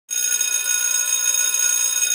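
Electric school bell ringing steadily with a high, bright, fluttering ring.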